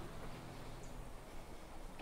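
Quiet outdoor background: a faint, steady low rumble and hiss with no distinct sound standing out.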